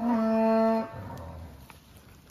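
A cow mooing once: a single short, steady call lasting under a second at the start, followed by quiet grazing-herd background.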